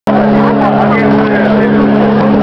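Live rock band playing loud, with a chord held steady under the singer's voice.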